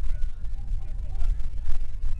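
Pitch-side ambience of an outdoor soccer match: a heavy, steady low rumble on the field microphone with faint distant shouts from players.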